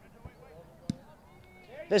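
A single sharp thud about a second in: a boot kicking a rugby ball for a penalty kick to touch.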